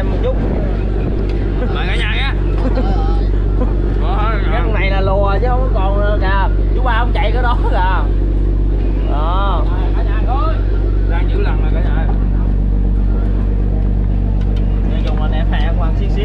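Fishing boat's diesel engine running with a steady low hum, with several voices talking over it.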